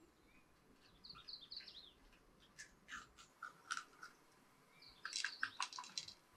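Small birds chirping in short high notes, with crisp clicks and crackles from green peppers being split open and deseeded by hand into a clay bowl, the crackling densest near the end.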